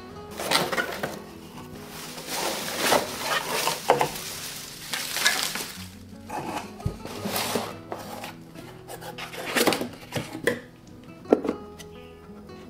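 Cardboard boxes and packaging being handled: a run of rustling, scraping bursts through the first half and again near the end, with a sharp knock near the end, over soft background music.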